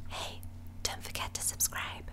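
Soft breathy whispering, two short whispered sounds with a few small clicks between them, over a steady low hum.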